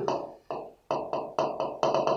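Stylus strokes on the glass of an interactive display as handwriting is drawn: a quick run of sharp taps, about four a second, each trailing off briefly.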